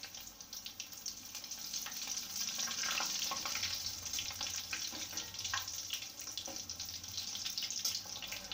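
Breadcrumb-coated egg cutlets deep-frying in hot oil in a steel pan: a steady bubbling sizzle.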